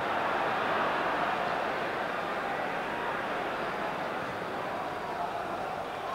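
Football stadium crowd: a steady wash of crowd noise with no distinct chants or cheers, easing slightly over the few seconds.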